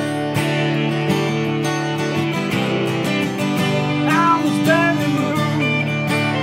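Acoustic guitar strumming chords with an electric guitar playing along in an instrumental passage of a song, with a few bending notes about four to five seconds in.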